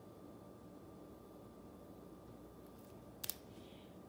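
Near-silent room tone with a faint steady hum, broken about three seconds in by a single short, sharp click of a small hard object.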